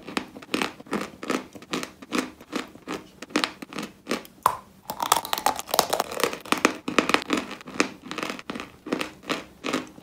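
Close-up chewing of a dry, crumbly white dessert: rapid dry crunches and crackles, several a second, with a short lull a little after the middle.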